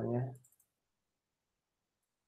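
A man's voice finishing a word, with a quick few computer mouse clicks about half a second in; after that the sound drops to dead silence.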